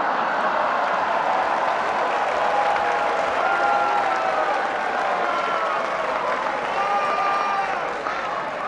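Large banquet audience applauding and laughing in response to a joke, a dense, steady wash of clapping that fades slightly near the end.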